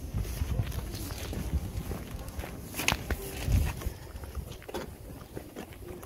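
Footsteps on a street with the low rumble of wind and handling on a hand-held phone's microphone, and a few sharp knocks around the middle.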